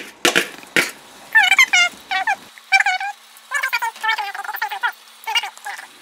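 A couple of sharp knocks from a utensil against the pot, then a string of short, high-pitched wavering calls, several of them rising and falling in pitch.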